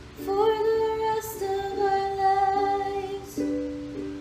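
Ukulele strummed in a slow chord progression, the chord changing every second or so. A woman's wordless voice holds long notes above it, sliding up into the first one.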